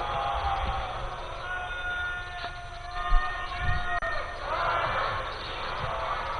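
Many voices of a seated congregation chanting together in overlapping held and gliding notes, with one thump about three seconds in.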